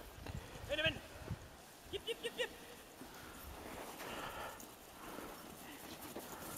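Husky sled team running over snow, paws pattering and harness moving. There is a short high call about a second in and a quick run of four short high calls about two seconds in.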